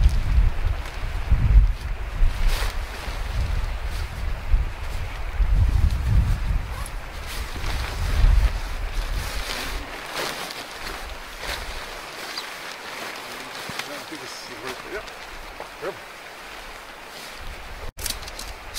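Wind buffeting the microphone with a heavy rumble that eases off about halfway through, over the rustle and crinkle of nylon tent fabric being shaken out and handled.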